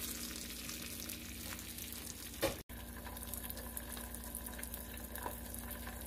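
An egg frying in butter in a small nonstick pan: a steady, fine sizzle and crackle, with one short click about halfway through.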